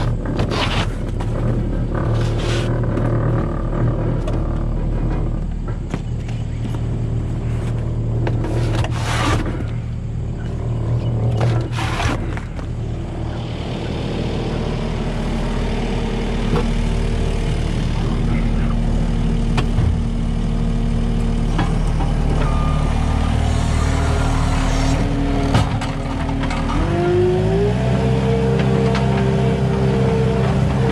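Skid steer loader's engine idling steadily, with sharp knocks and scrapes of cardboard boxes and junk being tossed into a wooden bin over the first dozen seconds. Near the end the engine speed rises quickly and holds higher as the throttle is opened.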